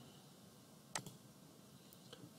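A single computer mouse click about a second in, submitting a web form, over near silence, with a fainter tick near the end.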